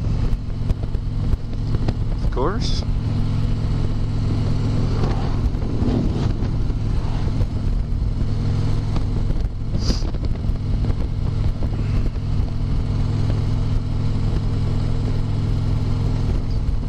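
Harley-Davidson touring motorcycle's V-twin engine running steadily at cruising speed, heard from the saddle with wind and road noise.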